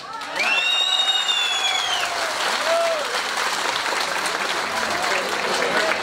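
Crowd applauding at the end of a speech. A long high-pitched tone rises over the clapping about half a second in and fades out around two seconds in.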